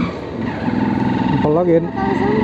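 Motorcycle engine running at a steady speed while being ridden. A voice speaks briefly near the end.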